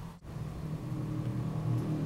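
Low steady rumble, slowly growing louder, after a brief dropout in the sound just after the start.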